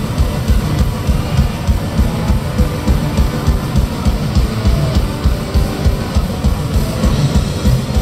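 Heavy metal band playing live through an open-air PA, heard from within the crowd: a drum kit with a fast, steady bass drum pulse under electric guitars.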